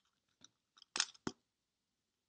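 Quiet clicks of a computer mouse and keyboard: a few light taps, then two sharper clicks close together about a second in.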